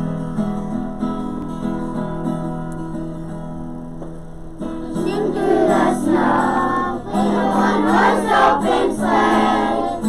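Instrumental accompaniment music plays a held intro, and about halfway in a group of kindergarten children begins singing a Christmas song over it.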